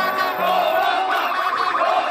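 A large crowd shouting and cheering, many voices at once without a break.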